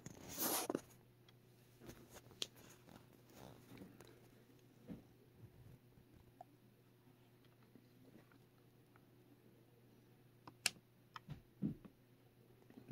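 Faint handling noise: a brief rustle as fingers brush the phone at the start, then scattered light clicks and taps from a hand working the HotRC transmitter and its USB cable, with a sharper click near the end. A faint steady low hum runs underneath.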